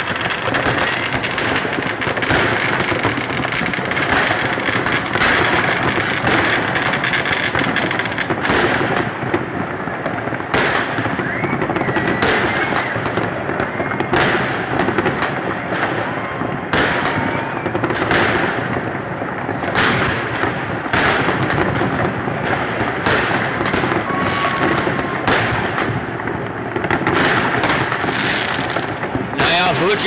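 New Year's Eve fireworks going off all around: rockets and firecrackers banging and crackling without pause, the bangs overlapping densely, with a few whistling rockets gliding in pitch among them.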